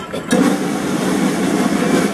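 A steady, dense din of outdoor street noise, with most of its weight low and no clear single event.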